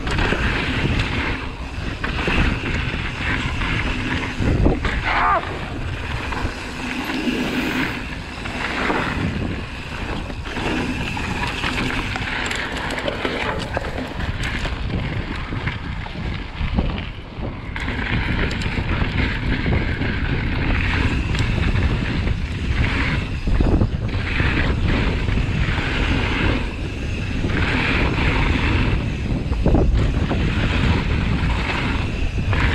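Mountain bike ridden fast over dirt lines and a gravel track: steady wind noise on the camera's microphone mixed with tyre noise on dirt and gravel, broken by frequent knocks and rattles from the bike.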